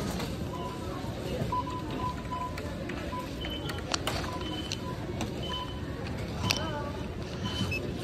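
Short electronic beeps from store checkout registers, many times over the few seconds, over a steady background of store noise and voices, with a couple of sharp clicks around the middle.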